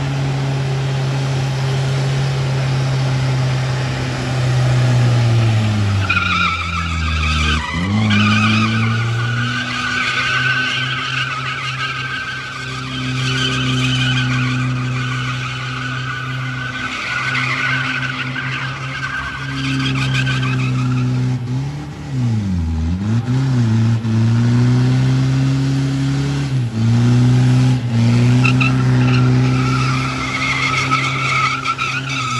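Holden Rodeo ute doing a burnout: engine held at high revs with the rear tyres spinning and squealing on the pad. The revs drop sharply and pick back up about seven seconds in, then dip twice around twenty-two seconds before climbing again.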